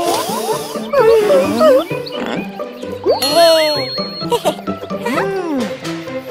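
Cartoon soundtrack: light background music under cartoon sound effects that slide up and down in pitch, with a bright ding about three seconds in.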